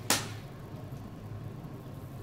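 A single sharp knock near the start, then quiet room tone with a steady low hum.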